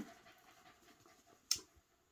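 Faint panting of a pet dog, with one sharp click about a second and a half in as an eyeshadow palette is handled.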